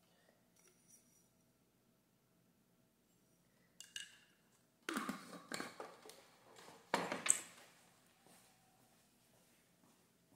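Metal spoon clinking and scraping against a glass mug as coffee is stirred, in short bursts from about four seconds in, loudest around seven seconds, alongside the clatter of a glass coffee jar being handled.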